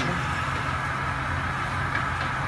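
Paper slitting machine running steadily, its rollers carrying a paper web that is slit into narrow strips and rewound: a continuous, even mechanical hum with no changes.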